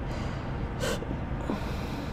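Pause in speech over a steady low background hum, with one short breath intake a little under a second in.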